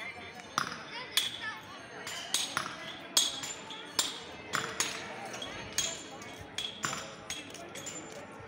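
Sharp metallic clinks, each with a brief ring, coming irregularly about twice a second over faint voices in the background.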